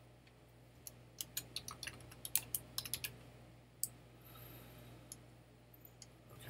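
Typing on a computer keyboard: a quick run of about a dozen keystrokes starting about a second in, then two single clicks later on.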